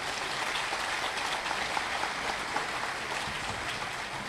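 Audience applauding steadily, many hands clapping.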